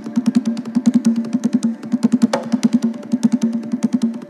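Haitian hand drum (tanbou) with a rope-tuned skin head, played with bare hands in the Zepol rhythm. It is a fast, unbroken run of low open tones at about eight strokes a second, with one sharp, ringing slap a little past halfway.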